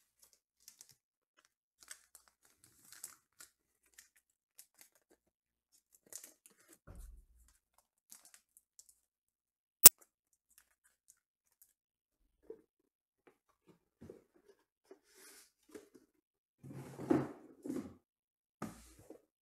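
Hands working trading-card packaging and plastic card holders: faint rustles and small clicks, one sharp click a little before halfway, then louder tearing and crinkling of packaging near the end.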